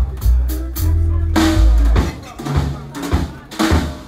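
Live jazz: a drum kit played with sticks, with bass drum, snare and cymbal strokes over an upright double bass plucking deep notes. A loud cymbal crash with a bass-drum hit lands about a third of the way in, and the strokes are sparser after it.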